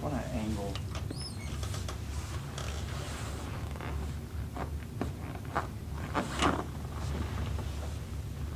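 Creaks of the padded chiropractic table and rustling clothing as a patient is positioned for a supine back adjustment, with a few short creaks and clicks in the second half, the loudest about six and a half seconds in, over a steady low room hum.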